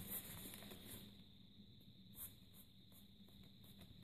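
Near silence: faint rustling of a tablet folio case being handled, with a light tick about two seconds in.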